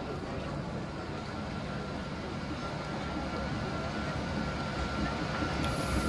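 Vintage wooden electric tram running along street rails and drawing alongside: a steady rolling rumble that grows louder, with a thin steady whine that strengthens in the second half.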